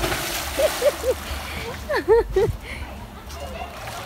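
Swimming-pool water splashing and churning as a swimmer lands flat in a belly flop, the spray dying away after about a second and a half.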